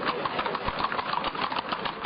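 Hooves of many horses clopping on a paved street: a dense, irregular clatter of hoofbeats.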